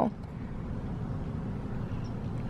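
Steady low rumble of car cabin noise, engine and road or idle hum heard from inside the car.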